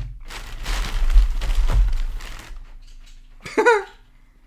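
Tissue packing paper rustling and crinkling as a hand rummages in a box and pulls out a paper-wrapped item. It lasts about two seconds, then dies down, followed by a brief vocal sound near the end.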